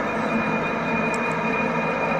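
A steady background drone made of several held tones, unchanging throughout.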